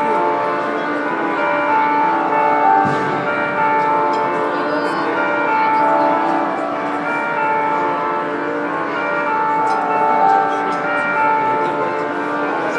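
Live band's song intro through the PA: bell-like chiming chords with a slow melody of long held notes.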